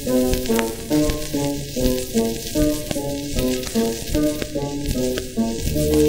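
Old 78 rpm shellac record, the 1940 Shanghai Pathé pressing, playing a Chinese popular song's instrumental opening: a melody of short stepped notes over steady surface hiss and crackle. Lower bass notes join near the end.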